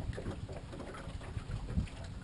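Wind buffeting an outdoor microphone, a low uneven rumble.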